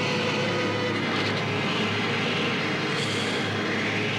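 Film soundtrack ambience with no speech: a steady noisy wash over a low hum, with a held tone that fades out about a second in.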